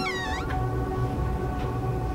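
A cat's meow, sliding up and then down in pitch, ending about half a second in, over steady held notes of an eerie background music drone.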